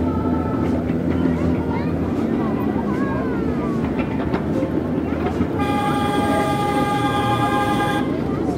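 A train running with a steady low rumble. About five and a half seconds in, its horn starts one long, steady blast.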